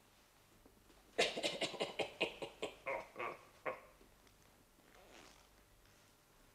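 Turkey gobbling: a rapid run of about a dozen short calls starting about a second in, slowing and dropping in pitch toward the end.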